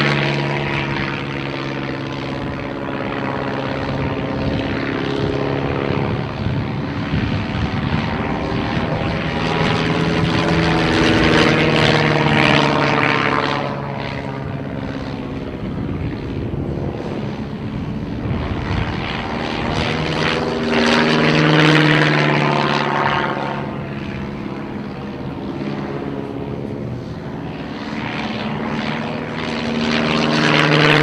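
De Havilland Tiger Moth biplane's inverted four-cylinder engine and propeller, flying aerobatics: the engine note rises and falls in pitch again and again as power and airspeed change through the manoeuvres. It swells loudest as the aircraft passes close, about a third and about two-thirds of the way through.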